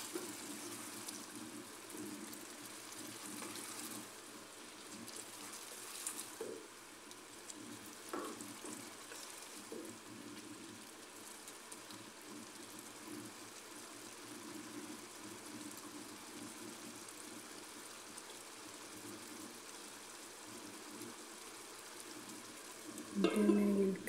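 Minced beef stew with added water sizzling faintly and steadily in a frying pan, stirred with a wooden spoon, which knocks lightly against the pan a few times in the first half.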